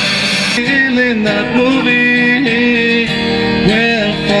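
Live rock band music. About half a second in, it cuts abruptly from a dense full-band passage to a guitar-led passage of held notes stepping up and down in pitch.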